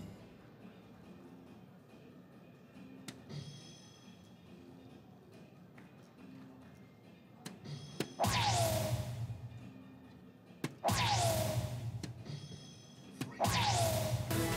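Three soft-tip darts hit the bull of a DARTSLIVE electronic dartboard about two and a half seconds apart. Each hit sets off the machine's loud electronic bull sound effect, a whoosh with a falling tone, and the three bulls in a row make a hat trick. Before the first dart there are only a few faint clicks over a quiet hall.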